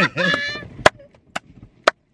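A burst of laughter, then three sharp clicks about half a second apart.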